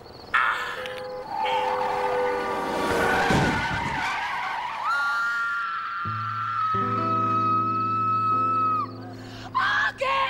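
People yelling, then one long, steady, high-pitched held yell lasting about four seconds, with low sustained music chords coming in underneath about six seconds in.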